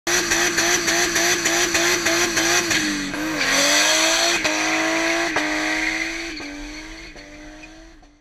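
Red Toyota Supra doing a burnout: the engine is held at high revs, its note wavering and then dipping about three seconds in, over the steady high squeal of spinning rear tyres. The sound fades out over the last two seconds.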